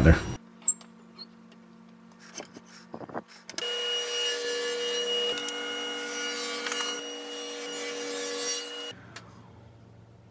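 Table saw running steadily for about five seconds, starting and stopping abruptly, after a few light knocks.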